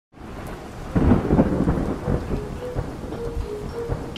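Thunderstorm sound effect: steady rain fading in, with thunder rumbling in about a second in. A few faint held notes step between two pitches in the second half.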